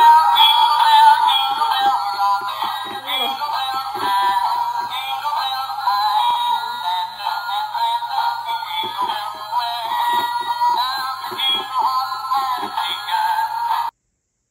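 Battery-powered dancing Christmas tree toy playing a synthetic-voiced song through its small built-in speaker. The sound is thin and tinny, with no bass, and runs on without a break.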